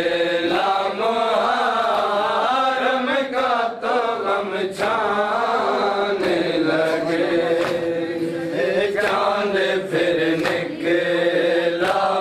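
A group of men chanting a noha, a Shia mourning lament, in unison, with sharp slaps of hands beating on chests (matam) every second or so.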